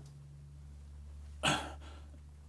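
A man's short grunt or forced breath of effort about one and a half seconds in, as he strains on a wrench to break loose a tight valve adjuster, over a low steady hum.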